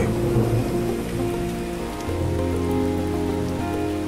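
Steady rain falling, under soft background music with held chords that change about one and two seconds in.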